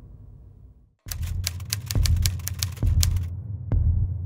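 Typewriter sound effect: a fast run of sharp key clacks, about six a second, for about two seconds, over a deep low pulse. It starts after a brief silence, as a quiet music bed fades out in the first second, and a single deep thump follows near the end.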